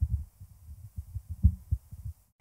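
Microphone handling noise: irregular low, dull thumps and bumps, several a second.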